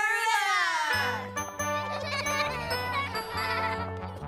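A held, wavering sung note from the cartoon's title jingle, ending about a second in, followed by cartoon background music with a repeating bass line.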